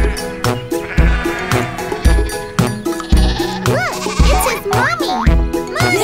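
Upbeat children's cartoon music with a steady thumping beat, with a cartoon lamb bleating over it in a few wavering calls in the second half.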